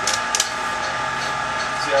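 Bamboo strip being split in half by hand along the grain: two sharp cracks about a quarter second apart near the start.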